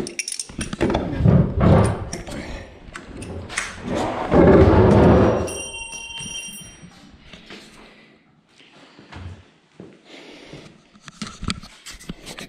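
Knocking and handling clatter with a loud scraping clatter about four seconds in, then a brief high metallic ring as a small metal tool lands on a concrete floor after being dropped.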